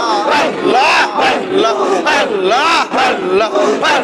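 Zikr chanting: a crowd of men repeating "Allah" together in loud, rhythmic calls. Each call rises and falls in pitch, with one amplified voice leading.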